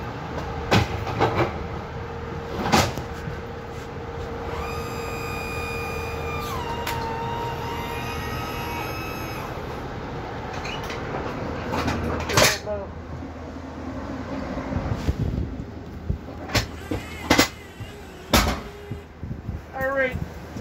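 Ambulance stretcher being wheeled up and loaded into the back of an ambulance: a series of sharp clunks and clicks from the cot's frame and latches. A sustained whining tone lasts a few seconds in the middle and drops in pitch partway through.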